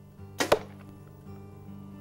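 An arrow whooshes in and strikes a deer target with one sharp hit about half a second in, over soft acoustic guitar background music.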